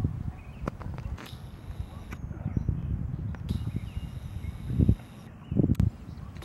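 Wind buffeting the microphone: an uneven low rumble that swells twice near the end, with a few faint clicks.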